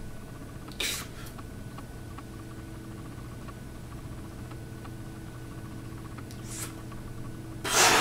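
Breathing exercise: a short, sharp sip of air about a second in, a fainter sip a few seconds later, then a loud rush of breath near the end as the lungs are emptied. A steady low hum of room tone runs underneath.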